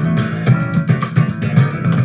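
Live band playing an instrumental passage between vocal lines: an electric bass guitar line moving in the low register, with sharp drum and cymbal hits over it.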